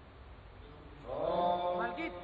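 Mantras chanted in a held, sung tone during a Hindu puja ritual, starting about halfway through after a quiet first second.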